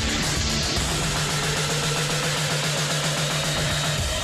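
Loud title theme music for a TV show's opening sequence, driven by a fast, evenly pulsing bass note; the music shifts abruptly at the very end.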